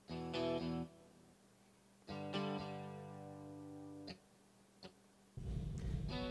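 Sampled guitar from Reason's A-List guitarist instrument playing back short chord phrases: a brief chord, then a chord held for about two seconds, then another phrase starting near the end. The phrases are being auditioned while its playing style is switched.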